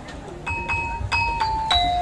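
Gamelan metallophone accompanying the jaranan dance, struck in a quick run of ringing metal notes. The notes begin about half a second in and step downward in pitch, several strokes a second.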